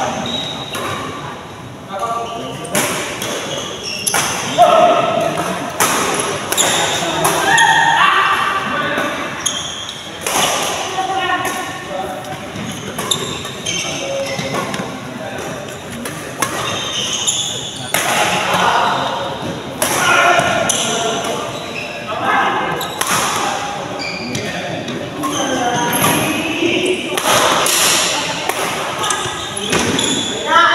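Badminton rally: repeated sharp smacks of rackets striking a shuttlecock, several close together at times, with people's voices in the background.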